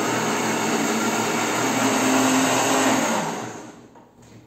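Countertop blender running at speed, blending fresh herb leaves in a little water, then winding down and stopping near the end.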